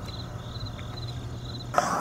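Quiet background between sung lines: a low steady hum with a faint, high, rapidly pulsing chirp over it, which stops near the end.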